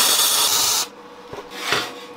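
Electric arc welder crackling as a tack weld is laid on steel tube, cutting off suddenly just under a second in. A couple of faint knocks follow.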